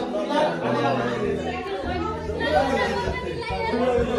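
Chatter of a party crowd, many people talking at once in a room, with music playing underneath.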